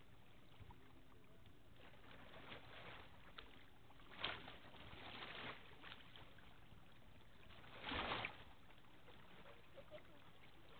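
Faint steady outdoor background noise, broken by a few short rushes of noise about four and five seconds in and a louder one near eight seconds.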